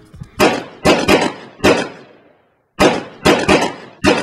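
A string of sharp, loud percussive hits with a short ringing tail on each, like a sound-effect sting. They come in two quick groups, several hits in the first two seconds, then a brief dead silence and three more.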